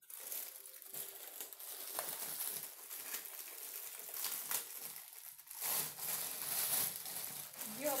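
Plastic snack packet crinkling as it is handled and opened, louder for a stretch near the end.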